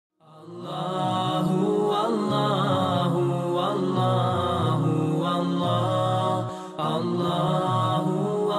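Intro music of layered chanting voices, a vocal nasheed, holding and sliding between notes. It fades in over the first second and dips briefly about six and a half seconds in.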